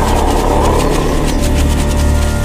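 Dramatic soundtrack music for an action scene, carried by a deep, steady low rumble.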